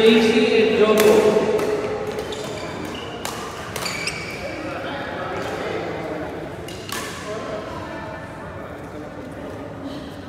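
Badminton rackets striking a shuttlecock in a doubles rally: several sharp hits in the first four seconds and one more about seven seconds in, each echoing in a large hall.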